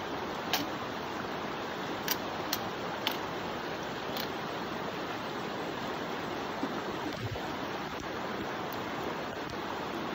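Shallow creek running over rocks, a steady rush of water. A few sharp clicks sound in the first few seconds.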